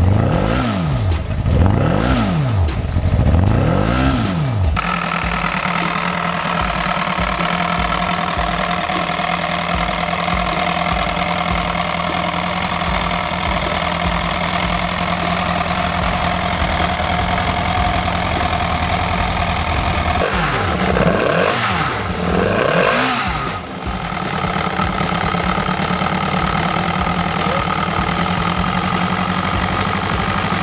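Yamaha 150 hp four-cylinder snowmobile engine, running in an experimental aircraft, revved in three quick throttle blips in the first four seconds. It then settles to a steady idle, with two more blips about two-thirds of the way through. The idle is running a few hundred RPM low.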